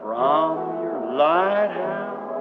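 A man's voice singing two wordless phrases that slide up and down in pitch, over a sustained chord of worship music.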